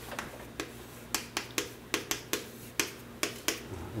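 Chalk striking and tapping on a chalkboard as a diagram is drawn: about a dozen sharp, irregular clicks, coming thicker in the second half.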